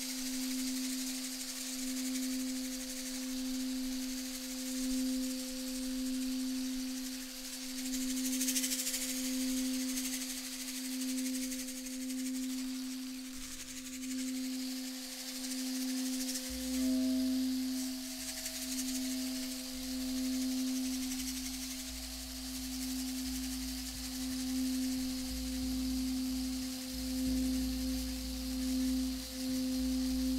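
Crystal singing bowl played with a mallet, ringing one steady, slowly pulsing tone with a fainter tone an octave above. A low rumble comes in about halfway through.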